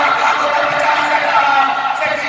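A man's voice through a microphone, chanting a Muharram mourning recitation in long, drawn-out sung notes.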